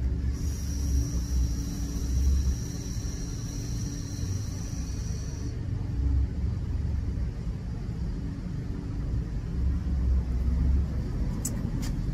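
Long draw on a box-mod vape with a tank atomiser: a steady high hiss of the coil firing and air drawn through the tank, lasting about five seconds. Under it a low rumble swells and fades throughout.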